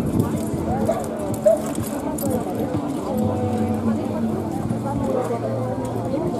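Hoofbeats of a pair of carriage horses moving fast over turf, with people's voices in the background.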